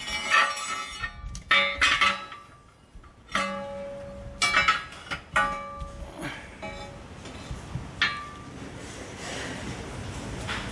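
Painted steel bumper brackets clinking against each other as they are handled and laid overlapping, about seven separate knocks, each ringing out briefly with a metallic tone.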